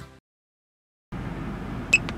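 Music fades out into a short silence, then the steady low hum of the pickup's cab comes in, from the 6.4-liter Hemi V8 truck. Near the end comes a short high beep from the dash-mounted performance meter as its buttons are pressed.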